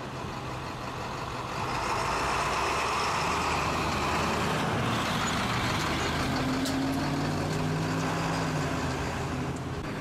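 Tow truck's engine running amid steady road-traffic noise, a low engine hum standing out more clearly in the second half.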